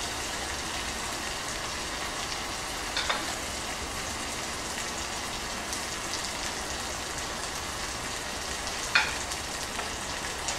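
Mushrooms in vegetarian oyster sauce frying in a clay pot: a steady sizzle, with a short knock about three seconds in and a louder one near the end.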